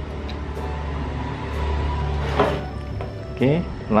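A steady low hum under faint background music, with a few light clicks from handling the circuit board and its cables. A brief voice comes in near the end.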